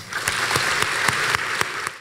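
Audience applauding with many hands clapping, beginning right at the start and cutting off abruptly at the end.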